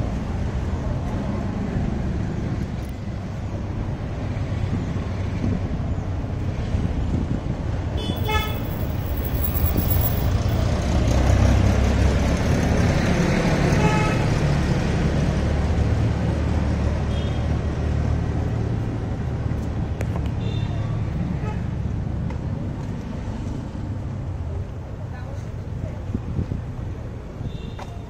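Busy city street traffic: engines of cars, auto-rickshaws and motorbikes running past, swelling louder in the middle as vehicles pass close. A vehicle horn toots about eight seconds in and again about fourteen seconds in.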